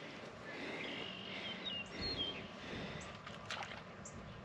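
Quiet outdoor ambience with a few faint bird chirps, a short run of them between about one and two seconds in.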